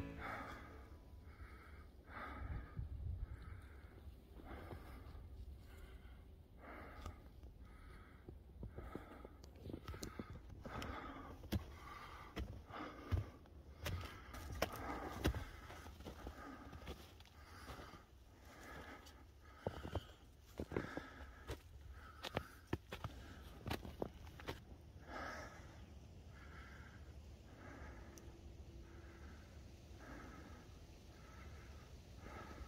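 Footsteps crunching in snow on a mountain trail, a steady walking rhythm of a little under two steps a second, with scattered sharp clicks.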